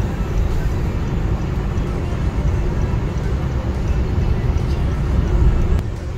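Steady road and engine noise inside a moving car's cabin, mostly a deep rumble, swelling slightly near the end.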